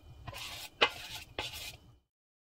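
Batter being scraped from a bowl into a metal muffin tin: soft scraping hisses broken by two sharp knocks, the louder one just under a second in and another half a second later.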